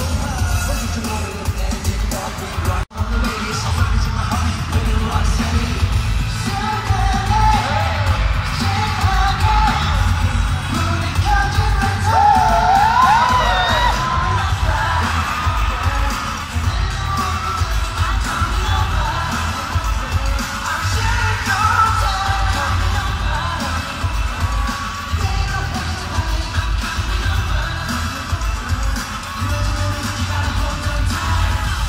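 Live pop music played loud over an arena sound system, with a heavy bass beat and group singing, and a crowd yelling along. The sound drops out for an instant about three seconds in.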